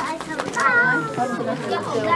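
People talking in Mandarin close by; only conversation, no other sound stands out.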